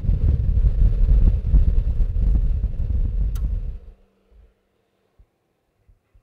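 A loud, irregular low rumble that cuts off suddenly about four seconds in, leaving near silence with a few faint clicks.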